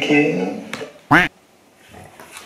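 A voice trails off, then about a second in comes a single short, loud quack-like squawk whose pitch rises and falls: a comic sound effect marking an embarrassing mistake.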